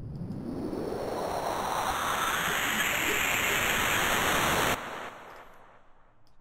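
Synthesized noise riser from the Serum soft synth: a distorted, downsampled, static-like noise texture that swells in level and brightness for nearly five seconds. It cuts off suddenly into a short fading reverb and delay tail.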